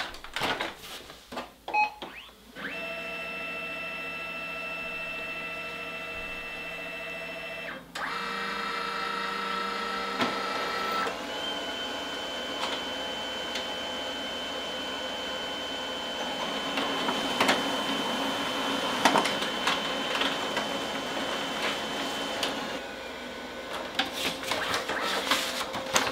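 Brother MFC-7840W multifunction printer making a copy. A few clicks and a short beep come first. A steady motor hum follows for about five seconds as it scans, then its pitch changes. A long steady high whine with scattered clicks runs while it prints, ending in clicks and rattles as the page feeds out.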